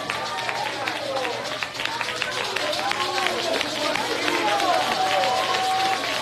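Several voices at once, calling out with pitch rising and falling, one voice holding a steady note near the end, over a rapid scatter of short sharp hits.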